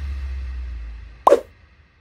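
The closing music's low bass note fades out, then a single short pop-like sound effect, falling in pitch, comes about a second and a quarter in as the end-screen logo appears.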